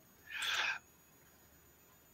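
A person's short breathy exhale into a microphone, about half a second long.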